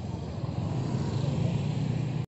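Street traffic: motorcycle and car engines running as they pass close by, a steady mixed hum.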